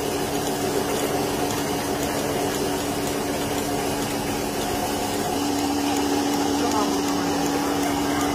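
Milking machine's vacuum pump running with a steady hum while the teat cups are on the cow.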